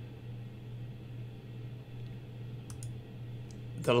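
A few faint clicks from working a computer, about three seconds in, over a steady low hum.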